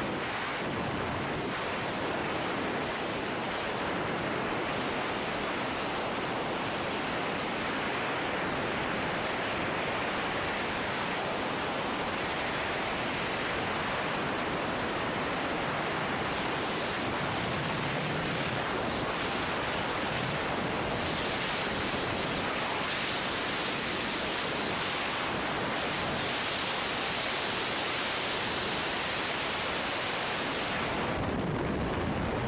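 Steady rush of freefall wind buffeting a helmet-mounted camera's microphone, an even roar with no breaks.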